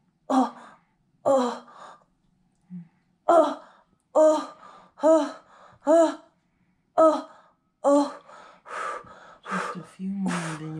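A woman in the final stage of labour crying out in short, sharp voiced gasps, about one a second, each rising and falling in pitch, as she bears down to deliver her baby.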